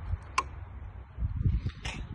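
A single sharp click about half a second in as the toggle switch on a small control box is flipped, the switch that sets the CPT measurement to auto, off or manual mode. It is followed by some low rumbling and a fainter click near the end.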